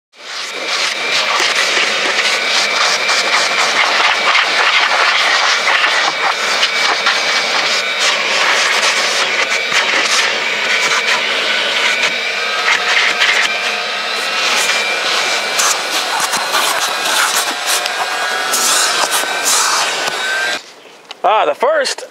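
Vacuum cleaner motor running steadily with a high whine, switched off about twenty seconds in.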